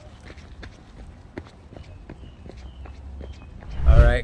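Running footsteps on pavement, about three steps a second, picked up by a handheld phone over a low rumble of wind and handling noise.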